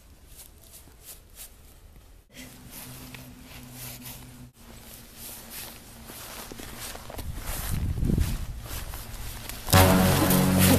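Footsteps crunching in snow, then a low held tone of added music from about two seconds in, under a rush of noise that swells. Loud music starts abruptly just before the end.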